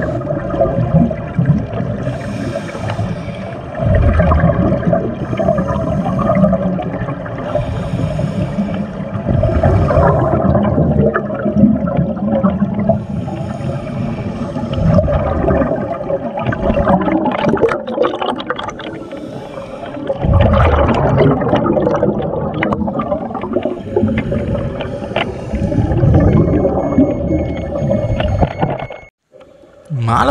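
Scuba divers' regulator breathing heard underwater: continuous gurgling with a loud rush of exhaled bubbles about every five or six seconds. The sound drops out briefly near the end.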